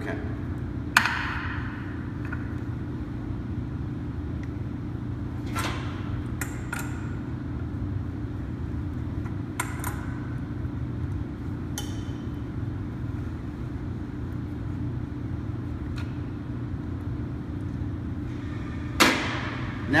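Brass test cock being threaded into a Watts 957 backflow preventer and tightened with an adjustable wrench: a handful of short metal clicks and clinks, the loudest about a second in, over a steady low hum.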